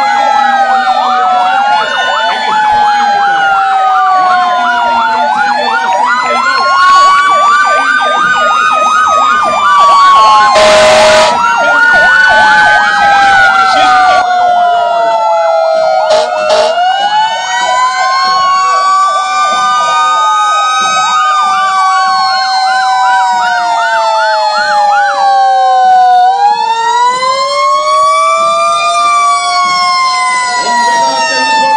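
Several fire engine sirens wailing at once, their pitches rising and falling out of step with each other. There is a short loud blast about ten seconds in.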